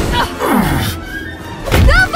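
Thuds over background music: one thud at the start and a louder one near the end, with a pitched sound sliding down about half a second in.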